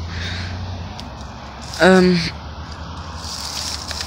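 Rustling and crackling of dead leaves, twigs and brush as someone pushes through undergrowth, over a steady low rumble, with a short 'um' about two seconds in.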